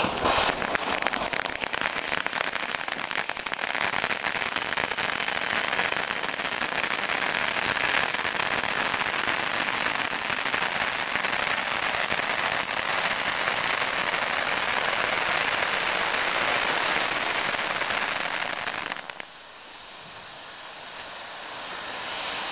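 Triple firework fountain burning: a loud, steady hiss full of fine crackle starts suddenly. About nineteen seconds in it drops to a much quieter hiss as the spray weakens.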